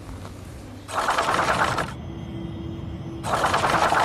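TV show's scene-transition sound effect: a fast mechanical-sounding rattle about a second in, a lower steady hum, then the rattle again near the end.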